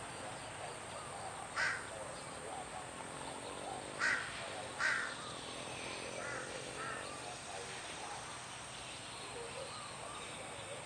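Crows calling: three loud, short caws about one and a half, four and five seconds in, then two fainter calls a little later, over a steady low background.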